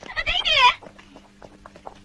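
A short, high-pitched, wavering cat-like cry lasting about half a second, rising and bending in pitch, followed by faint clicks over a low hum.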